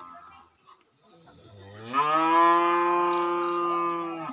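A bull mooing: one long, loud call that rises in pitch and then holds steady, starting about a second and a half in.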